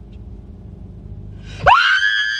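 A low steady rumble inside the car, then a sudden loud, high-pitched scream about 1.7 seconds in. The scream shoots up in pitch and is then held.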